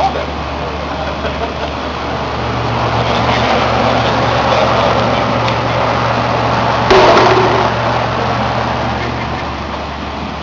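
Steady hum and rushing of a Thermotron environmental test chamber's refrigeration and fans, growing louder as the chamber door is opened. There is one sharp knock about seven seconds in.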